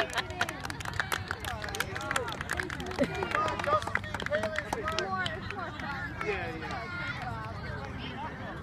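Spectators talking and calling out indistinctly, several voices overlapping, with many sharp clicks through the first half that fade out later.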